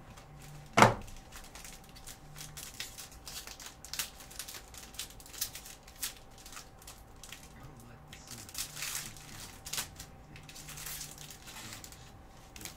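Plastic shrink wrap on a trading card box crinkling and tearing as it is pulled off, in irregular crackles. There is a sharp knock about a second in, the loudest sound.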